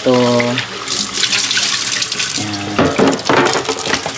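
Kitchen faucet running into a plastic container held in a stainless steel sink, water splashing as the container is rinsed.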